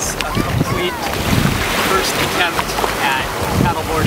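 Small waves washing around the legs and onto the shore in shallow ocean water, with wind buffeting the microphone.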